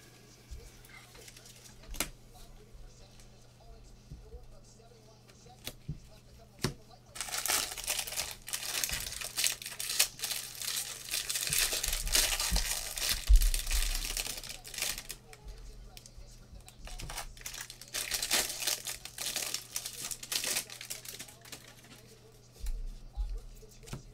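Foil wrapper of a trading-card pack being torn open and crinkled, in a long spell starting about seven seconds in and a shorter one a few seconds later.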